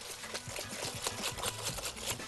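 Wire whisk beating a liquid egg mixture in a glass bowl, its wires clicking against the glass in a fast, even rhythm of several strokes a second.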